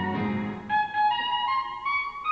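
Jazz clarinet playing alone, a line of short held notes climbing step by step, after the band's sustained low note dies away near the start.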